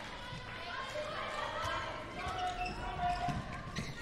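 A handball being bounced on an indoor court floor during a set-up attack, with faint players' voices in a large, almost empty hall.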